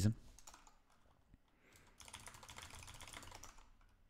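Computer keyboard typing: a quick, faint run of keystrokes starting about two seconds in and lasting about a second and a half, after a few scattered key clicks.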